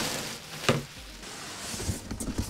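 Plastic packing rustling and a cardboard shipping box being handled during unpacking, with one sharp knock a little under a second in and a few soft knocks near the end.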